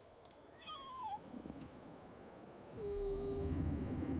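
A baby dinosaur's short, high call about a second in, sliding down in pitch; an AI-generated creature sound. In the last second or so a low rumble rises, with a steady held tone in it.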